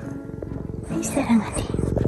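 A domestic cat purring close to the microphone while it is stroked, a rapid, even low rattle that grows stronger toward the end, with a short voiced sound about a second in.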